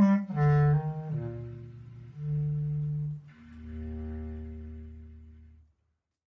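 Bass clarinet and cello improvising together: a falling run of notes settles into low held notes, the last of which fades away shortly before the end.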